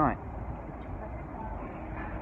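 Steady low rumble of distant city traffic, with no distinct events.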